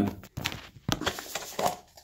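Light knocks and rustling as a lidded black pot is picked up and handled and its lid worked loose, the clearest knock about a second in.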